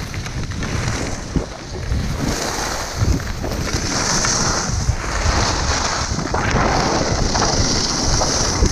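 Wind buffeting a GoPro's microphone while skiing downhill, with the hiss and scrape of skis sliding on packed snow that grows louder after about two seconds as speed picks up.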